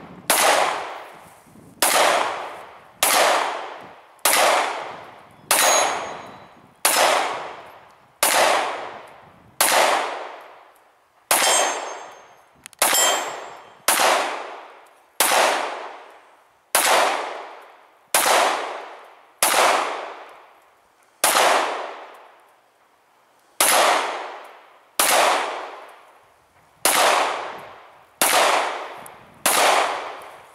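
A semi-automatic pistol fired steadily, about one shot a second, some twenty-plus shots, each trailing off in a long echo. Some of the shots are followed by the thin ringing clang of a steel plate target being hit.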